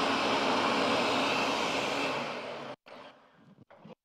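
Countertop blender motor running steadily at full speed, blending a thick Greek-yogurt and parmesan Caesar dressing, then cutting off abruptly about two and three-quarter seconds in.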